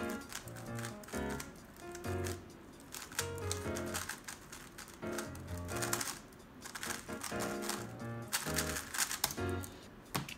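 Background music with a beat, over rapid clicking and clacking of a DaYan TengYun V2 M magnetic 3x3 speedcube being turned fast during a timed solve.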